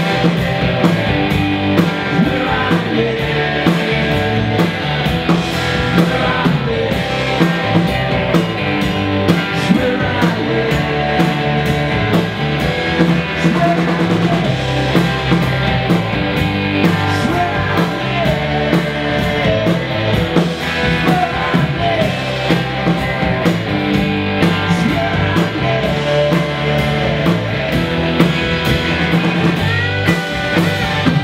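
Live rock band playing electric guitars over drums, with a steady beat and cymbal strikes throughout.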